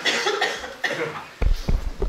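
A cough at the start, then from about a second and a half in a run of irregular dull knocks and thumps from a table microphone being handled and adjusted.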